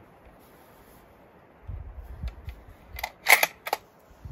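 Tikka .30-06 bolt-action rifle being loaded by hand. Some low handling rumble, then three quick sharp metallic clicks from its action near the end, the middle one loudest.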